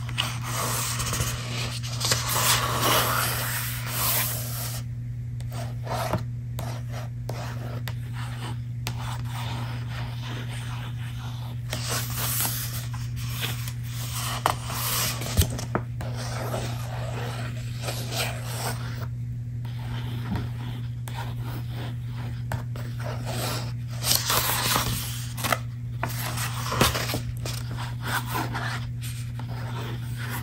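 Hands rubbing and scraping over the paper pages and cover of a book close to the microphone, in irregular strokes with a few sharper taps and brief pauses.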